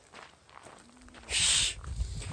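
Footsteps crunching on a gravel trail as a hiker backs away uphill. About a second and a half in there is a loud, short hiss, over a low rumble on the phone's microphone.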